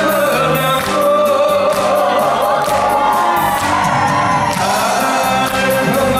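Korean trot song with a male voice singing into a microphone over a backing track with a steady beat.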